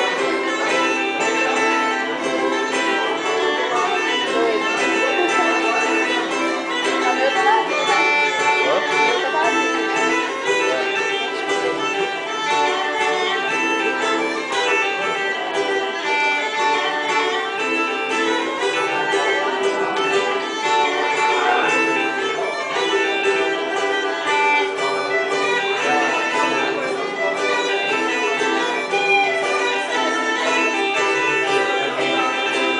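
Irish folk tune played on Galician bagpipes (gaita galega), the melody running over a steady drone, with a plucked string instrument accompanying.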